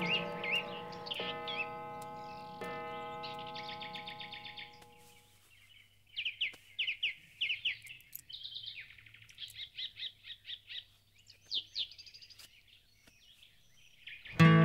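Small birds chirping, with repeated quick falling whistled calls, some in rapid runs. Held musical notes fade out over the first few seconds.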